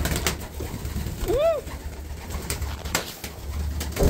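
Domestic pigeons in a loft: one short cooing call that rises and falls in pitch about a second and a half in, with a few light knocks and clicks around it over a low steady rumble.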